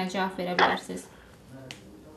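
A voice over a telephone line finishing a phrase, with a short sharp snap about half a second in, then a brief pause broken by a faint click.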